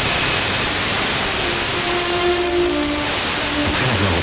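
FM radio hiss and static as a Blaupunkt car radio is tuned down through the band around 89.9 MHz. Faint musical tones from a distant station come through the noise for about a second, about two seconds in: a weak signal arriving by sporadic-E.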